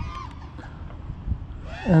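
Faint whine of an FPV racing quadcopter's motors in flight, rising and falling in pitch, over a low rumble; a man's voice starts near the end.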